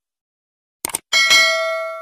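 Subscribe-button sound effect: a quick double mouse click just before a second in, then a notification bell struck twice in quick succession, ringing and slowly fading.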